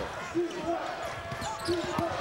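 A basketball being dribbled on a hardwood court, with a few sharp bounces heard over arena crowd noise and scattered voices.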